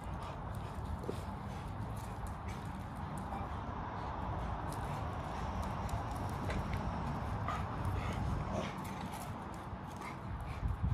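A dog scuffling and pulling during a game of tug-of-war on a toy, faint irregular taps and movement over a steady background noise.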